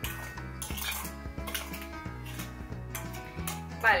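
Metal spoon scraping and clinking against a glass bowl while stirring a damp, gritty mix of sand and cornstarch.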